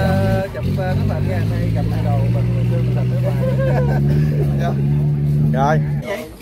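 An engine running steadily close by, a low hum whose pitch creeps up slightly over several seconds, with voices over it.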